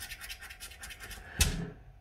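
A scratch card's scratched panel being rubbed and scratched by hand in quick strokes, about eight a second, with a single knock about one and a half seconds in.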